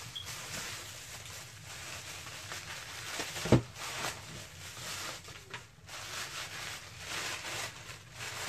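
Bubble wrap and tissue paper rustling and crinkling as a package is unwrapped by hand, with one sharp knock about three and a half seconds in.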